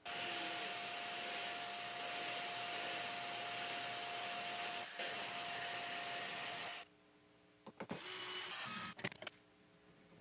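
Abrasive blast gun in a sandblasting cabinet blasting rust off a ball-peen hammer head: a loud hissing rush that surges and eases, then cuts off suddenly about two-thirds of the way in. A few clicks and a brief hiss follow near the end.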